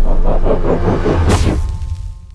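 Intro sound effect for a logo: a loud low rumble with a pulsing, engine-like texture and a whoosh about a second and a half in, then a ringing tone that begins to fade out near the end.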